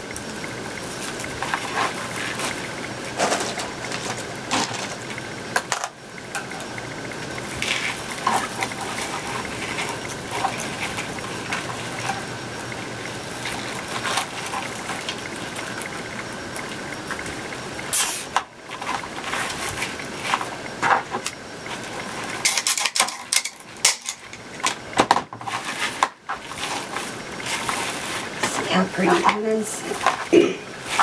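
Plastic deco mesh rustling and crinkling as it is twisted and fluffed onto a wire wreath frame, with scattered light clicks throughout.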